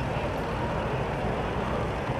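Police motorcycle engines running, a steady low rumble under general street noise.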